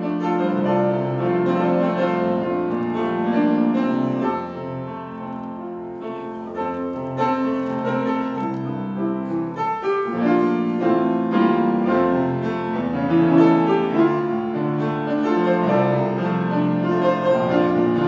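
Solo piano playing classical music, in the manner of a ballet class accompaniment for barre exercises.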